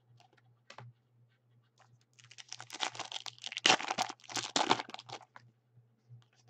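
Trading cards and their pack being handled: a few light clicks, then about three seconds of dense, crisp crackling and rustling as the cards and wrapper are worked through by hand.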